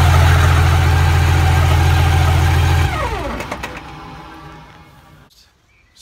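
Turbocharged pickup truck engine running loud and steady at high revs, then let off about three seconds in: a whine glides down in pitch and the sound fades away.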